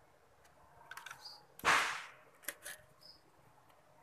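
Steel cable being handled and wound around a motorcycle's kick-start shaft: a few light clicks, then, about a second and a half in, one short rasp that fades quickly, followed by two more faint clicks.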